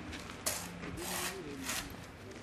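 A shovel scraping through soil and gravel in three rasping strokes, the first starting about half a second in.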